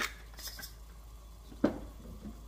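Glass pepper shaker shaken over a pan of soup, a few short soft rattles in the first second, then a single sharp clink about one and a half seconds in as it is set down on the stainless steel stovetop.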